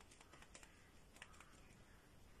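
Near silence: room tone with a few faint, light clicks and taps, most in the first half and a couple more just past the middle.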